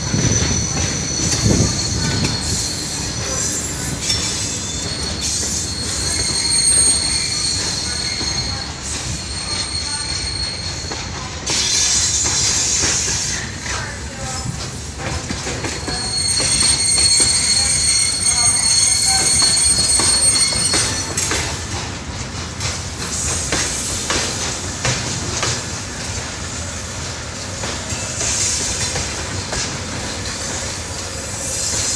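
Freight train of covered hopper wagons rolling past close by, the wheels squealing in high thin tones that come and go, over a steady rumble with repeated clacks from the rail joints.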